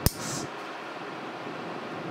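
One sharp snip of a heavy-duty toenail nipper cutting through a long, overgrown toenail right at the start, with a short high hiss after it, then faint steady room noise.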